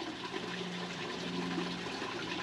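Steady hiss of running water, with a faint steady low hum beneath it.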